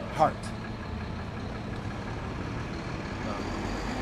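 Steady low rumble of city street traffic with an engine idling, after one spoken word at the start.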